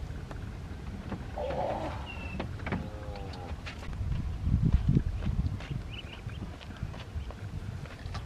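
Ducklings peeping now and then, short high chirps, over a steady low rumble, with a few knocks from the fish being handled.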